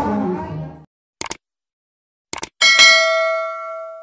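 Subscribe-button animation sound effect: a quick click, a double click about a second later, then a bell-like ding that rings out and fades over about a second and a half. Fiesta music and voices fade out in the first second.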